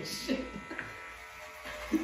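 Electric hair clippers buzzing steadily as they run through a man's hair.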